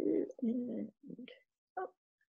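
A woman's voice murmuring or humming softly without words, in a few short rising and falling sounds.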